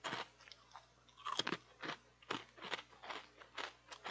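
Faint, irregular crunching noises close to the microphone, about three a second.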